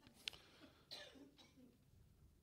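Near silence: room tone with a faint click about a quarter of a second in and a faint, short breathy sound about a second in.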